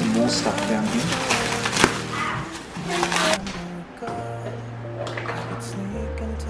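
Background music with a steady bass line. Over it, plastic wrapping is pulled and torn off a rolled inflatable paddleboard, crinkling for the first three seconds or so.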